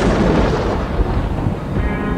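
Thunder-like rumble dying away slowly, deep and loud, a dramatic sound effect laid over the shock close-up; held music notes come in near the end.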